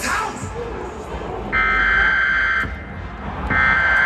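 Emergency-broadcast style weather alert tones over the stadium public address: two harsh buzzing bursts, each about a second long and a second apart, signalling a mock severe storm warning. A large crowd murmurs beneath.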